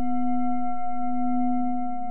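A singing bowl ringing on after a single strike, with a clear, steady, layered tone over a faint low hum.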